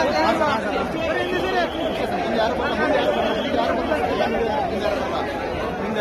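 A dense crowd of many voices shouting and talking over each other at once, steady and loud throughout.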